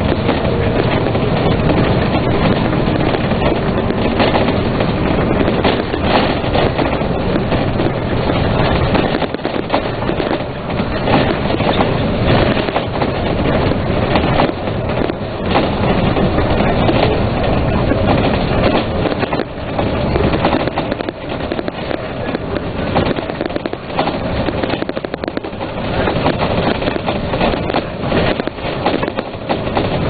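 Inside a Dennis Trident three-axle double-decker bus on the move: steady engine and road noise with constant rattling and clicking of the fittings. The level dips briefly a few times.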